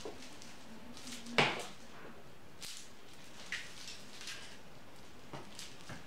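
Handling noises while Christmas lights are strung on an artificial tree: one sharp knock about a second and a half in, then a few faint clicks and rustles over a steady hiss.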